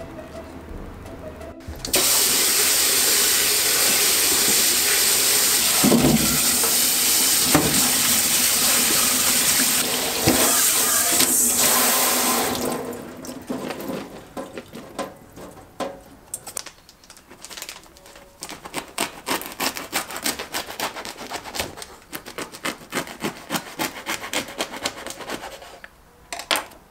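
Kitchen tap spraying water into a stainless steel sink, rinsing cherry tomatoes in a metal bowl; the water stops about twelve seconds in. After that comes a run of quick, irregular clicks and crackles.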